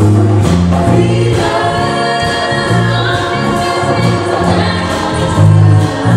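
Live musical number: a chorus of voices singing together over a band, with a bass line of repeated low notes and percussion keeping the beat.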